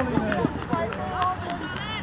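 Raised voices calling out during a football match, with several short sharp thuds from feet and ball.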